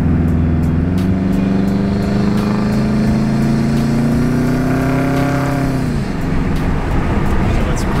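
Turbocharged flat-four of a 2008 Subaru WRX, fitted with a VF52 turbo, catless downpipe and Invidia N1 cat-back exhaust, heard from inside the cabin under acceleration. The engine note climbs steadily for about five seconds with a faint rising turbo whistle above it, then drops suddenly about six seconds in as the throttle is lifted.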